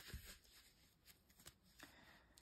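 Near silence, with a brief faint rustle of tarot cards being handled at the start and a few tiny ticks after.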